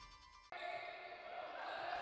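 The faint tail of a TV theme jingle dies away, followed by half a second of silence. Then comes faint indoor basketball court sound.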